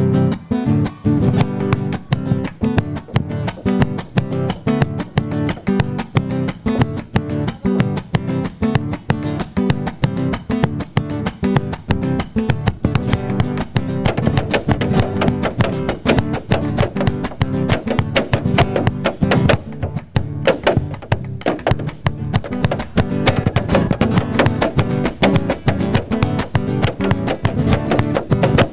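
Malambo zapateo: a dancer's boots strike a wooden stage in rapid, dense rhythmic strokes, over strummed acoustic guitar accompaniment playing a steady malambo rhythm.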